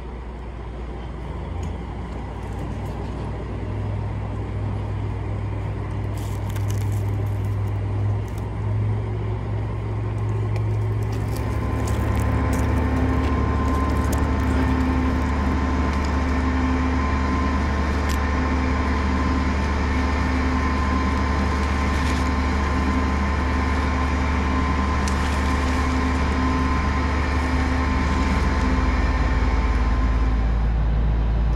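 A crane's engine running steadily. About eleven seconds in it gets louder and runs at a higher speed, and stays there.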